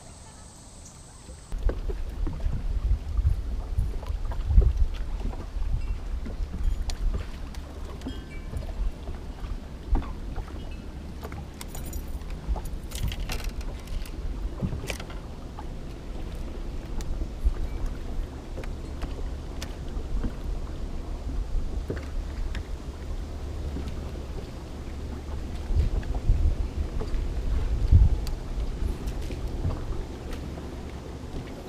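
Gusty low rumble of wind buffeting the microphone on an open bass boat, starting abruptly about a second and a half in, with scattered small clicks and rattles from fishing tackle.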